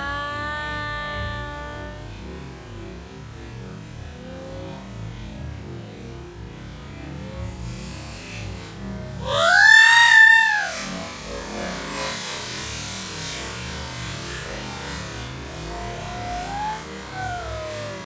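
Slowed-down, pitch-warped slow-motion audio of a person jumping off a boat into the sea. It opens with drawn-out, smeared voice tones. About ten seconds in comes a loud, long cry that rises and then falls in pitch as she falls. After it comes a stretched, hissing splash of water.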